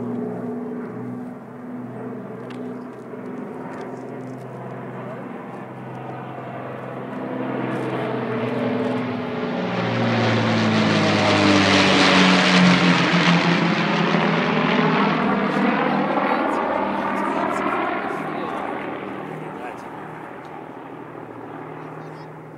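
Avro Lancaster bomber's four Merlin V12 piston engines droning in a low flypast. The sound builds as the plane approaches, is loudest about halfway through as it passes overhead, then drops in pitch and fades away.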